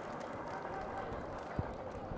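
Faint steady room noise with no speech, and one soft knock about one and a half seconds in.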